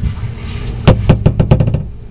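Camcorder handling noise: a quick run of about eight knocks and rubs against the camera body, starting about a second in, as the camera is grabbed and its lens covered.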